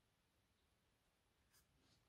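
Near silence: the sound track is essentially muted.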